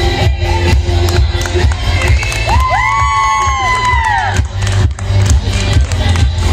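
Recorded music with a heavy, pulsing bass plays while friends cheer. About halfway through, two voices let out a long, high, held shout that rises at the start and falls away after nearly two seconds.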